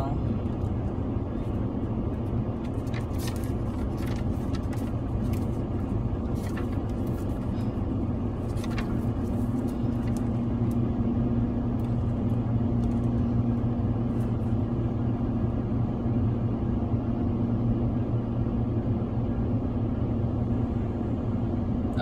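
Car engine idling, a steady low hum heard from inside the cabin, with a tone that firms up about eight seconds in. A few light clicks are scattered over it.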